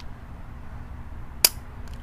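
A single sharp metallic click from the action of a Colt 1903 Pocket Hammerless .32 ACP pistol being worked by hand, about one and a half seconds in, over a low steady hum.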